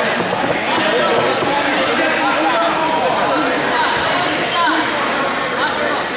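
Many overlapping, indistinct voices of a crowd talking and calling out in a large, echoing hall, with a few dull thuds.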